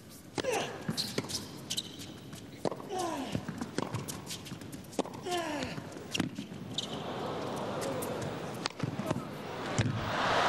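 A tennis rally on an indoor court: sharp racket-on-ball strikes, with shoe squeaks on the court surface between them. A crowd murmur swells in the last few seconds as the point ends, running into applause.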